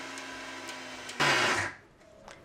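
Electric kitchen mixer grinder running with a steady motor hum, grinding soaked rice and poha into dosa batter. About a second in it turns louder and noisier for half a second, then stops near the end.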